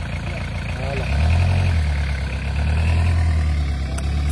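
Toyota pickup truck's engine running steadily. About a second in, its low note gets louder and holds there, as if the engine is being given more throttle or put under load.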